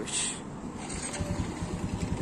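Small automatic motorbike engine running with a steady low putter, which comes in about a second in; a short hiss just before it.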